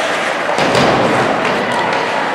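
Ice hockey play in a rink during a scramble at the goal: sticks clattering and skates scraping on the ice, with a heavier thud about half a second in.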